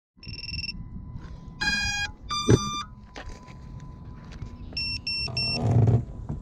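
Electronic beeps from an FPV quadcopter and its onboard camera being powered up. A short beep comes first, then two buzzy tones with the second higher, then three short beeps near the end. Handling knocks and rubbing from a hand on the camera run underneath.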